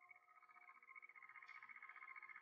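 Near silence: faint room tone with a steady high hum.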